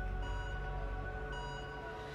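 Quiet background score of held, sustained tones over a low hum, with soft new notes coming in a moment in and again just past halfway.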